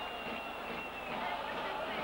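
Stadium crowd noise from a football match, a steady even murmur heard through an old television broadcast, with a faint high steady tone during the first second.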